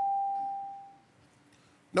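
Game-show chime: a single steady bell-like tone, sounded as the Fast Money timer comes up on screen, fading out about a second in.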